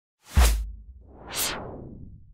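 Logo-reveal sound effect: a sudden deep boom with a short swish, then a whoosh that swells about a second in and fades away.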